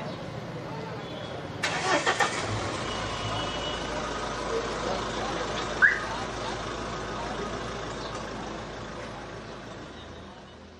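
A car engine starts with a short rapid clatter about two seconds in, then idles steadily. A short high squeak comes once near six seconds.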